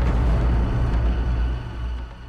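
A deep, sustained low rumble, the closing bass boom of a film trailer's sound design, holding steady and then beginning to fade near the end.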